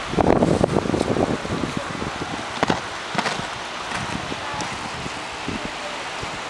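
Rustling handling noise close to the microphone at first, then a steady hiss with a few sharp clicks.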